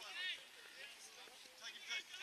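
Faint, distant shouts from football players calling out on the field: one raised call at the start and more near the end.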